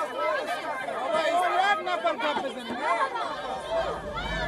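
A crowd of women's voices talking and calling out over one another at a street protest.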